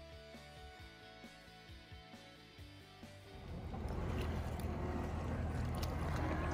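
Soft background music for about three seconds, then a John Deere 325G compact track loader's diesel engine running loud and steady under load as it carries a bucket of limestone riprap down a steep dirt ramp.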